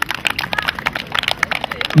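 A small group of people clapping their hands, a scattered patter of separate claps.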